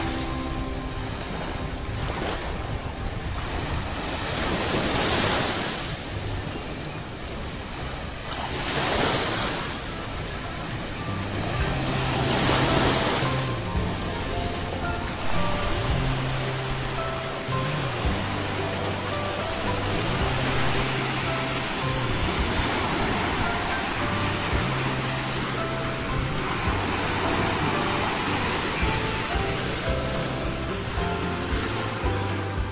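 Waves washing onto a beach, surging about every four seconds early on, under background music with a steady bass line.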